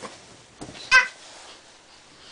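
A baby gives one short, high-pitched squeal about a second in.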